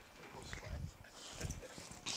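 Faint handling noises, soft low knocks and light rustling, as someone searches through belongings for a stack of business cards.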